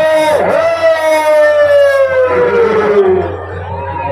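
A performer's voice over the stage loudspeakers holding one long drawn-out note that slides slowly down in pitch and breaks off about three seconds in.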